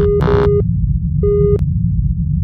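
Electronic sound effects for a glitching logo intro: a steady deep rumble under short electronic beeps, one at the start and another just past halfway, with sharp clicks.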